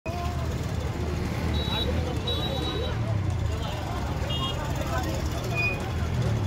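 Onlookers talking together over a steady low rumble of road traffic, with a few short high-pitched beeps.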